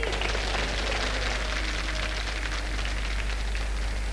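Studio audience applauding, a steady dense patter of many hands clapping that eases slightly as it goes on.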